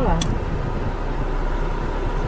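Steady low hum of a stationary car's cabin with its engine idling.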